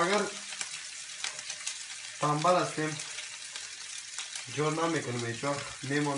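Food sizzling in a frying pan on a gas hob, a steady hiss with many small crackles. A man's voice chants briefly over it about two seconds in, and again near the end.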